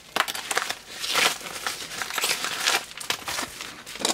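A yellow padded mailer and the plastic bag inside it crinkling and rustling in irregular bursts as they are handled.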